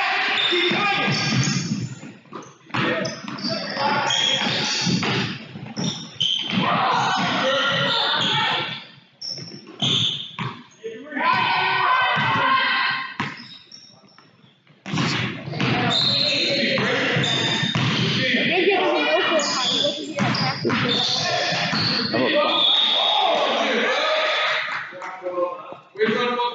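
A basketball dribbling and bouncing on a hardwood gym floor during a game, amid voices calling out across the court.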